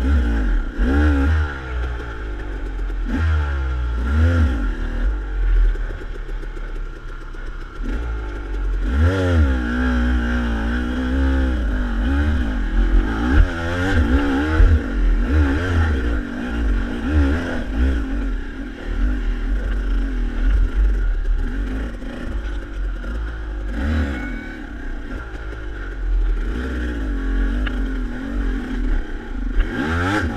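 SmartCarb-equipped KTM dirt bike engine revving up and down again and again under load while climbing a steep, rocky trail, with the clatter and scrape of the bike over rocks.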